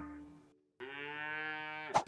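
A cow mooing: one call fading out at the start, then after a short silence a second steady call lasting about a second that drops in pitch at its end.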